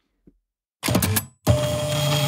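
Two short bursts of mechanical clatter, the second about a second long with a steady whine running through it.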